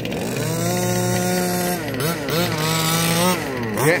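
Small two-stroke engine of a gas-powered RC Baja car revving up and holding a steady high note on throttle, dropping off about halfway through, then climbing and holding again before easing off near the end.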